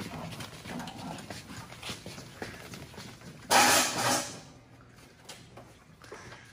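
Handling noise of a snow bike being moved into place on a shop floor: scattered knocks and clicks, with one loud rush of noise lasting under a second a little past the middle.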